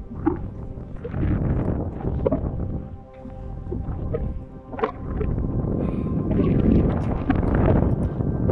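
Background music, with wind buffeting the microphone underneath.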